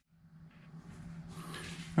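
Room tone across a video cut: a moment of silence, then faint hiss with a low steady hum fading in over the next second and a half.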